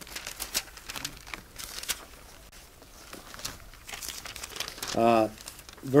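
Paper pages of a Bible being leafed through: a run of short rustles and crinkles as the pages turn. A voice comes in near the end.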